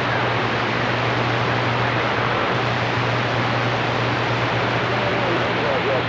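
CB radio receiver putting out a steady hiss of static with a low hum under it, no voice coming through.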